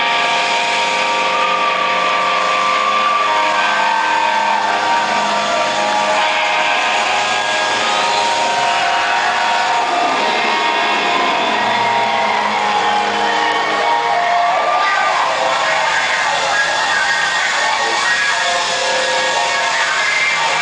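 Live rock band playing loud, heard from the audience: sustained electric guitar notes over the band, with notes bending and sliding in pitch around the middle.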